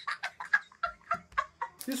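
A boy laughing hard in rapid, choppy cackles, about six a second, breaking off just before the end.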